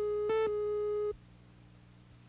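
Steady test tone of a TV commercial's countdown leader, with one short, buzzier beep on the same pitch about a third of a second in, marking a second of the countdown. The tone cuts off suddenly just past halfway, leaving near silence.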